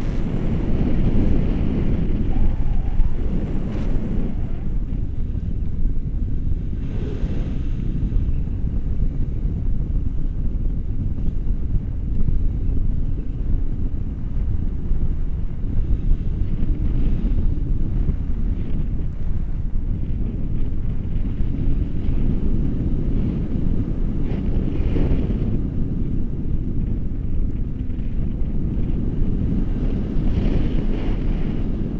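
Wind noise from the airflow of a paraglider in flight, buffeting the camera's microphone: a loud, steady, low rush that swells slightly now and then.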